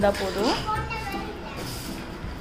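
Children's voices talking and calling, high-pitched with rising glides, mostly in the first second or so before they die down.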